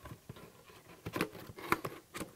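Cardboard and pulp packaging being handled, with quiet rustling and a few short knocks and taps, the sharpest about a second in and just before the end.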